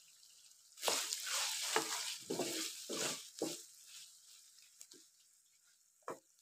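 Wooden spatula stirring chunks of meat through hot rendered fat in a karahi pan: several wet scraping strokes with a light sizzle. They start about a second in and die away after three and a half seconds, leaving a few faint clicks.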